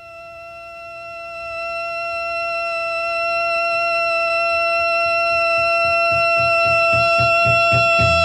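Heavy psych rock track opening on a single sustained electric guitar note, steady in pitch, fading up from silence and growing louder. A pulsing low rhythm builds underneath it in the last few seconds.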